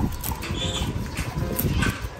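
A sheep close up, taking a grass leaf from a hand and eating it.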